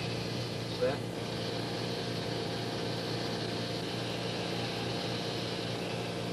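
Steady low hum and hiss, with a brief snatch of a voice about a second in.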